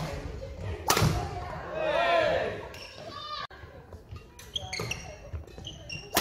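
Doubles badminton rally in a large hall: sharp racket hits on the shuttlecock, the loudest about a second in. Court shoes squeak on the wooden floor in a wavering squeal around two seconds in.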